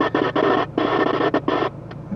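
CB radio static hissing from the set's speaker, chopped by a rapid run of brief dropouts, with no voice coming through clearly.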